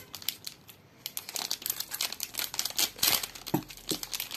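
Thin plastic film wrapping of a soap multipack crinkling as it is handled and unwrapped by hand: a dense, rapid crackle that picks up about a second in.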